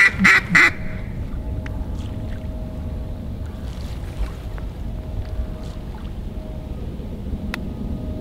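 Duck quacking in a few loud, short notes at the very start, over a duck-hunting decoy spread. Then a steady low rumble of wind on the microphone with a faint steady hum underneath.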